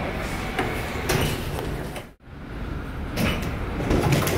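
Otis elevator doors sliding shut, a steady rumbling slide with a few clunks along the way. The sound cuts out for an instant about halfway through.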